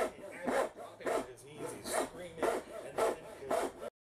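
Backsaw cutting down into the end of a 1x12 board, rasping strokes at about two a second. The sound cuts off abruptly near the end.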